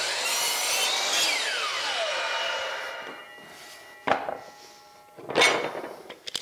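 DeWalt compound miter saw starting up and cutting through crown molding for about a second, then its blade spinning down with a falling whine after the trigger is released. Two short knocks follow later.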